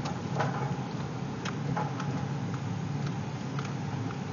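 Ford Ranger diesel engine running steadily at low speed, heard from inside the cab, with scattered light clicks and knocks as the truck crawls along a rough track.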